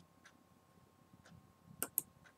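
Computer mouse button clicked, two quick clicks close together near the end, after a few faint ticks in an otherwise quiet room.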